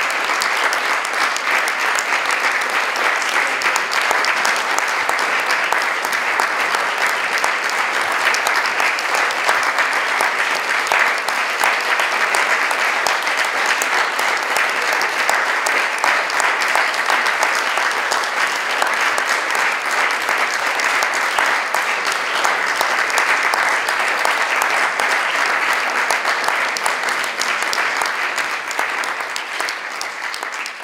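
Audience applauding steadily, a dense patter of many hands clapping, beginning to fade near the end.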